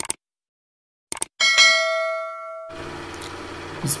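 A single bright bell-like ding that rings and fades away over about a second, preceded by two short clicks. A steady low hum sets in after it dies away.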